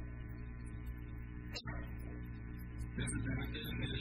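Steady electrical mains hum with its overtones, broken by a brief dropout about a second and a half in.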